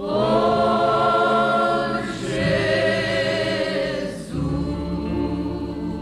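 Choir singing a hymn in Portuguese in held chords. The voices come in strongly at the start, swell in the middle, shift to a new chord about four seconds in and ease off toward the end.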